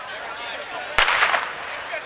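A starter's pistol fires once about a second in, the start signal for a sprint heat, followed by a brief burst of noise from the crowd. Spectators talk and call out around it.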